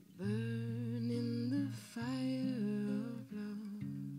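Music: a voice humming a wordless melody with a slight waver, over sustained acoustic guitar notes. The voice comes in just after the start and drops out a little before the end.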